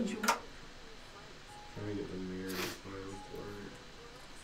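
A quiet stretch, then a faint, muffled low voice for a couple of seconds.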